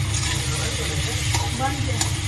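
Metal spatula stirring and scraping scrambled egg around a metal kadhai, with the egg frying in a light sizzle. A steady low hum runs underneath.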